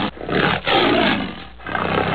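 A recorded lion roar sound effect of the kind used on the MGM film logo, heard as three rough roars in quick succession.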